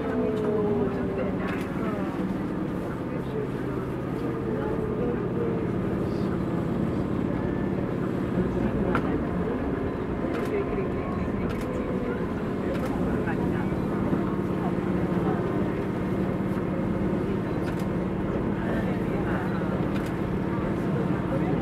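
Eizan Electric Railway electric train running along the track, heard from inside the car behind the driver's cab: a steady motor hum and wheel-on-rail noise with occasional sharp clicks.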